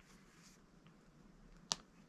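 Quiet room tone broken by a single short, sharp click near the end.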